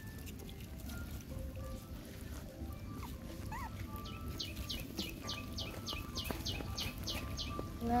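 A bird calls a fast run of about a dozen short, high, downward-sliding notes, roughly four a second, over the middle and latter part, against a steady low rumble of outdoor background noise.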